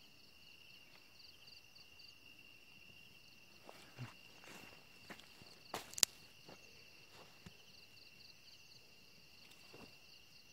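Night insects, cricket-like, trilling steadily in a faint, high, pulsing chorus. A few soft steps and rustles in grass break in, with one sharp click about six seconds in.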